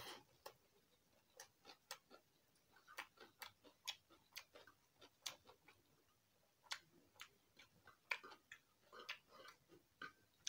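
Faint close-up eating sounds: irregular soft clicks and smacks of chewing, a few a second, as rice and leafy curry are eaten by hand from a metal plate.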